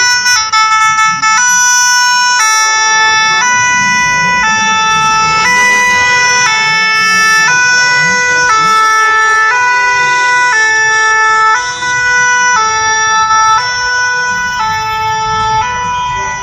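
Two-tone siren of a Paris fire brigade emergency ambulance, alternating between two notes about once a second and loud at close range, with street traffic rumbling underneath.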